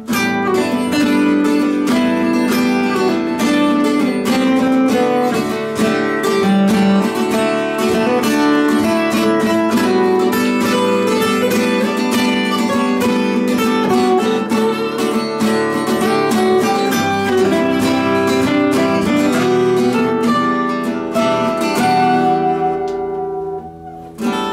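Two guitars playing an instrumental break with no singing, chords strummed steadily throughout. The playing thins out and drops in level just before the end.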